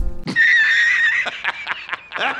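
A high-pitched, wavering cry about a second long, a comic sound effect edited into the video, followed by fainter scattered sound.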